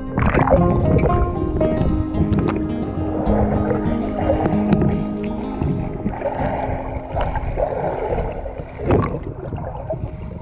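Soft background music over sea water churning around a camera held at and just under the surface, with one sudden louder burst near the end.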